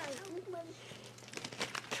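Quiet crinkling and small crackles as a hollow chocolate ball, already cracked open, is handled and picked apart, with a faint voice murmuring near the start.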